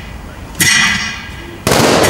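Two loud, sudden bangs, each trailing off in a ringing, echoing decay. The first comes about half a second in. The second, noisier and longer, comes near the end.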